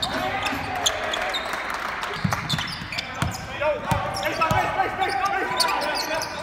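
Live basketball play heard from courtside: the ball bouncing on the hardwood floor several times, mostly in the second half, with sneakers squeaking. Players and crowd call out in the background.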